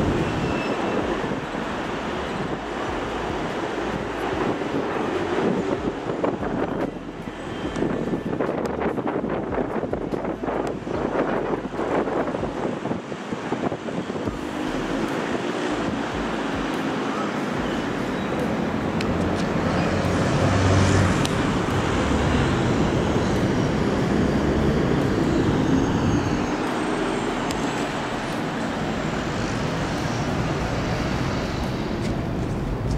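Steady wash of city traffic noise, with a faint engine-like hum in it, dipping a little in the middle.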